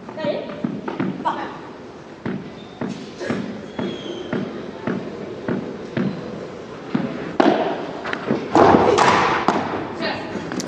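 A padel ball bounced on the court's artificial-turf floor, thudding about twice a second as the server prepares to serve. A louder stretch of noise follows near the end.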